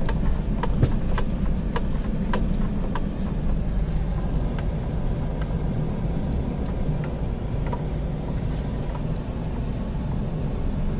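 Car cabin noise while driving slowly: a steady low engine and tyre rumble, with a scatter of sharp ticks in the first few seconds that thin out.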